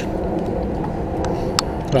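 Steady low running of a vehicle engine, with a couple of faint clicks about a second and a half in.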